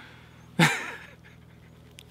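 A single short, breathy laugh-like huff from a man, about half a second in, falling in pitch. Under it runs a faint steady low hum.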